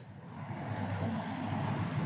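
Steady low rumble and hiss of background ambience, swelling in over the first half second and then holding even.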